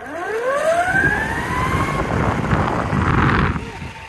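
Lorentz Major electric skateboard's motors accelerating hard from a standstill under full throttle: a whine that climbs steeply in pitch for about two seconds and then levels off. Underneath it runs the rough rolling noise of its pneumatic all-terrain tyres on asphalt.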